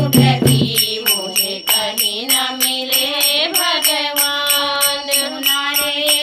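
Hindi devotional bhajan: a voice sings long held notes over a steady beat of jingling hand percussion at about four strokes a second. A deep drum plays in the first second, then drops out.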